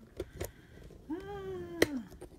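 A cat meows once, a single drawn-out call of about a second in the second half. A few sharp clicks and knocks come with it as the camera is handled.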